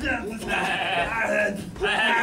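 A man's voice yelling in long, wavering cries, with a short break near the end.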